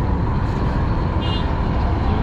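Wind buffeting the microphone: a steady, loud low rumble that rises and falls.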